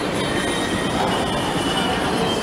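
Steady metallic din of a pachinko parlour open onto a covered shopping arcade: a dense rattle of steel balls and machines with a few faint high tones running through it.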